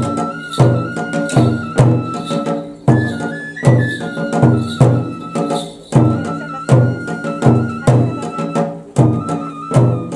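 Shinto kagura music: a bamboo transverse flute plays long held notes that step up and down in pitch over a steady drum beat of about two strokes a second.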